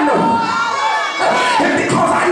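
A preacher's voice through a microphone and PA, shouted and half-sung in long bending phrases, with a congregation calling out over it.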